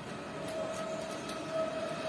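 A few faint clicks of a motorcycle ignition lock being worked by hand, under a steady background whine and hum.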